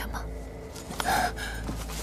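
A short, pained gasp from a voice actor about a second in, a sharp breath with a faint click at its onset, voicing an injured animated character.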